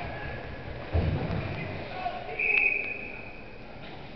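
Ice hockey play in an echoing rink: a loud thud about a second in, then a short high whistle blast from the referee near the middle, over spectators' voices.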